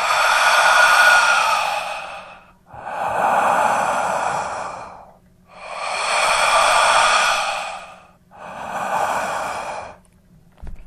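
Loud, heavy breathing close up: four long, slow breaths of about two and a half seconds each. It is the demonic presence's breathing, described as inches from the men's ears and the loudest it's ever been.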